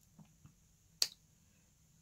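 A single sharp click about a second in, with two faint ticks shortly before it, over quiet room tone.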